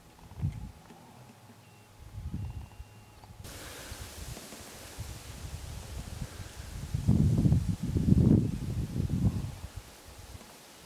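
Outdoor wind gusting on the microphone in irregular low rumbling bursts, loudest in the second half, over a steady hiss of rustling leaves and grass.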